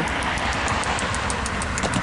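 Steady low hum and hiss of a VIA Rail GE P42DC diesel locomotive idling with its passenger train stopped at a station, with a car driving across the level crossing near the end.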